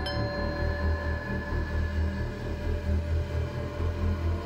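Eerie background score: a low, wavering drone under sustained ringing metallic tones, with a light chime strike right at the start.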